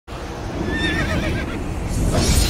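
A horse whinnying, a shrill wavering call lasting under a second, over a steady low rumble.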